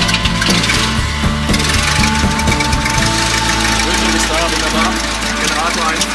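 Light single-engine propeller aircraft's piston engine running steadily on the ground, heard from inside the cockpit, mixed with background music.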